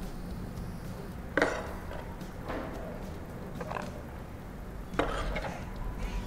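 Metal kitchen tongs clacking and scraping against a serving bowl as cooked hibiscus-flower filling is lifted onto tostadas: two sharper clacks, about a second and a half in and near the end, with softer ones between, over a low steady hum.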